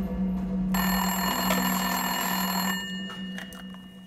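Landline telephone bell ringing: one ring of about two seconds, starting under a second in and fading away, over a steady low hum.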